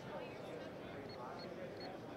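Keypad key-press beeps of a Hirsch ScramblePad entry keypad as a PIN code is entered: three short, high beeps in the second half, over faint background voices.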